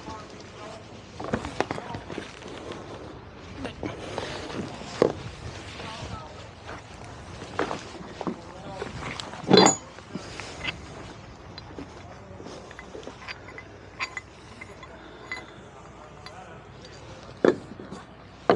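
Metal shackle and tow strap being handled at a dock cleat, with scattered clinks and knocks and one louder knock about halfway through.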